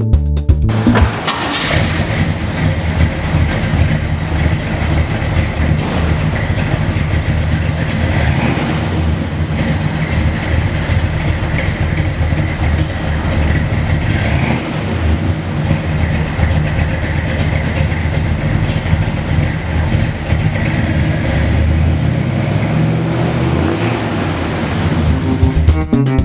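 A 1966 Chevrolet Impala's engine starts about a second in, then runs steadily with a deep, pulsing exhaust. Music comes back in near the end.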